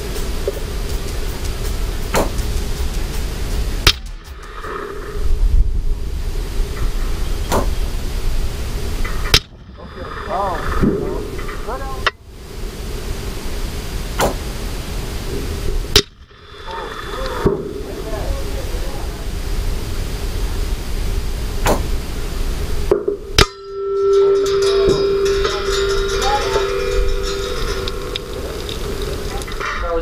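Rifle shots from a Ruger M77 in 6.5 Creedmoor: several sharp cracks a few seconds apart. Strong wind buffets the microphone throughout, and brief voices come in between the shots.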